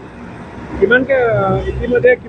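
Road traffic with a car engine's low rumble, swelling toward the end. A man's voice starts about a second in.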